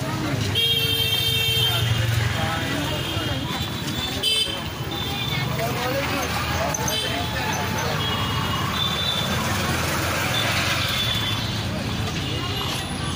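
Busy street ambience: steady traffic noise with short vehicle horn toots sounding again and again, over people talking in the background.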